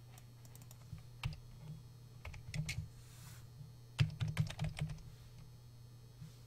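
Typing on a computer keyboard: scattered keystrokes, then a quick run of them about four seconds in, over a steady low electrical hum.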